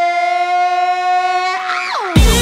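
A female pop vocalist holding one long, steady note with almost no accompaniment. Near the end the note breaks into a quick run that rises and falls.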